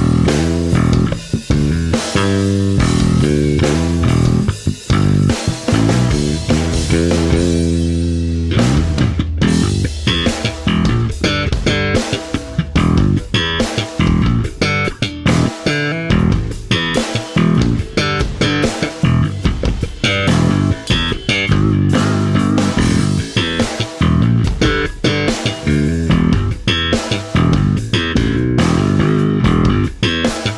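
Warwick Streamer Stage I four-string electric bass being played. It starts with long ringing notes, then about eight seconds in breaks into a busier line of quick, sharply attacked notes.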